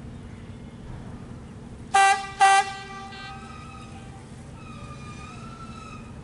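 Two short, loud horn toots in quick succession about two seconds in, over a steady low rumble.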